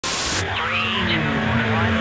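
Intro sound effect: a burst of TV-style white-noise static that cuts off sharply under half a second in, followed by glitchy sliding, warbling electronic tones over a steady low hum.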